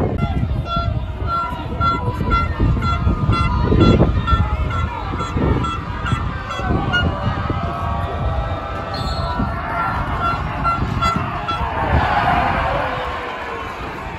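A football crowd's noise and chanting, with a horn in the stands sounding a quick run of short, even toots that stops after about seven seconds and starts again briefly around ten seconds.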